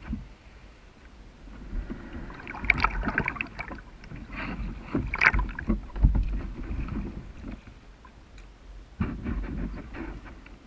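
A person climbing into a sea kayak from the water's edge: irregular knocks and thumps against the hull with water sloshing around it. Near the end, paddle strokes begin in the water.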